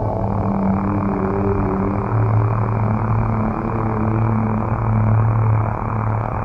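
Dark ambient synthesizer drone: a low steady hum under a thick, muffled noise wash with no top end, the low tone swelling slightly now and then.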